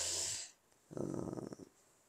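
A man's audible breath into a close microphone, a noisy rush lasting about half a second, followed about a second in by a short hesitant 'uh'.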